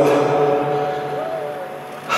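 Soft background music under a pause in the talk: a few notes held as a steady chord, slowly fading, with the tail of the man's voice echoing in the hall at the start.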